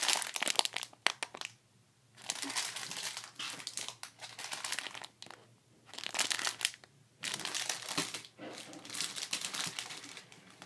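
Plastic packets of rubber loom bands crinkling as they are handled, in several bursts with short pauses between.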